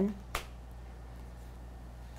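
A single sharp click about a third of a second in, then quiet room tone with a low steady hum.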